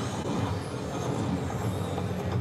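Steady low hum and rumble of casino floor background noise around a slot machine, with no clear tune or chimes.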